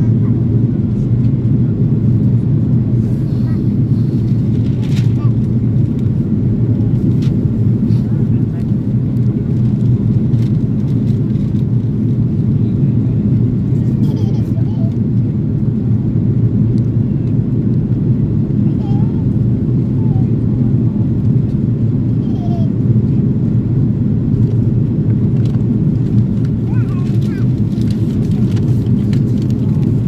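Steady cabin noise inside an Airbus A330-300 on approach: a constant low rumble of airflow and its Rolls-Royce Trent 772B engines, heard from a seat behind the wing.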